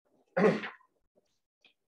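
A man gives one short cough to clear his throat, about half a second in, with faint small ticks after it.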